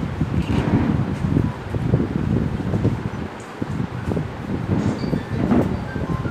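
Low, uneven rumbling noise of moving air buffeting the camera microphone, rising and falling irregularly.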